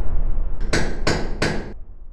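Three hammer strikes about a third of a second apart, over a low boom that is fading out: the sound logo under a hardware brand's end card.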